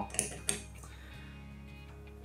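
Two short metallic clicks as the parts of an old brass-and-aluminium artillery fuze are handled on a tabletop, over quiet background music with steady held notes.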